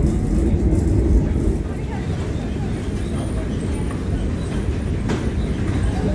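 London Underground train running, heard from inside the carriage as a loud, steady low rumble that eases slightly about a second and a half in. A single faint click comes near the end.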